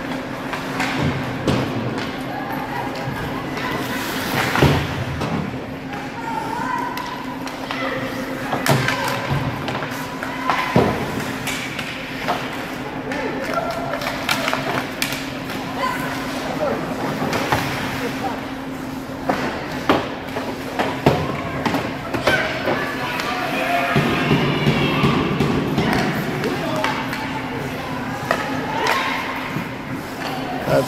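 Ice hockey arena during live play: a steady hum under the chatter of voices, broken by several sharp knocks of the puck and sticks against the boards.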